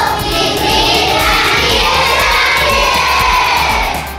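A group of children singing together over music with a steady beat.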